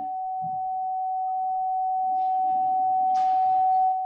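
A single steady high tone, the squeal of PA system feedback, growing steadily louder and then cutting off suddenly near the end. Faint room noise sits beneath it.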